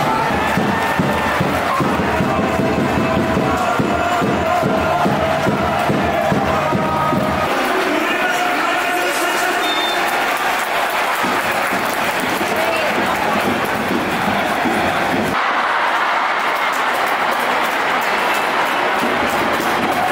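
Large stadium crowd of football supporters singing and chanting, with music over it in the first part. The sound changes abruptly about seven and fifteen seconds in.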